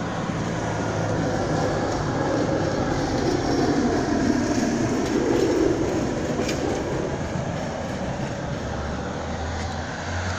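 Steady rumble of a passing vehicle on a nearby street, swelling about midway and easing off toward the end.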